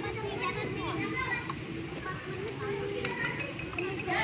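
Background chatter of several young children talking at once, no single voice standing out.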